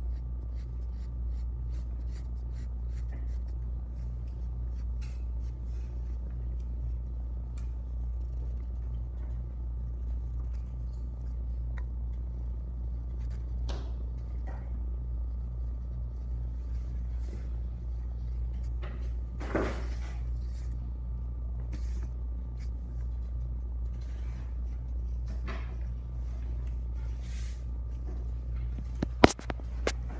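Classroom room tone: a steady low hum with a faint high whine, scattered light ticks and taps, a brief rustle about two-thirds through, and two sharp knocks near the end.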